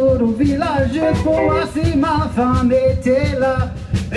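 Live band music: a man sings lead over accordion, fiddle, saxophone, archtop guitar and drums, with a steady beat throughout.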